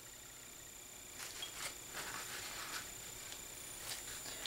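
Faint handling sounds: a few soft clicks and rustles, spread through the middle seconds, as a small plastic bottle is handled and tipped over a plastic dish, over low room tone.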